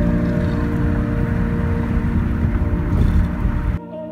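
Steady low road and wind rumble of a car driving on a highway, under long held notes of ambient music. The rumble cuts off suddenly near the end, leaving only the music.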